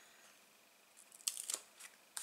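Paper and card handled on a craft mat: a quick cluster of short rustles and light clicks about a second in, and one more near the end.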